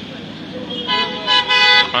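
Car horn honking in three short blasts, starting about a second in, over street traffic noise.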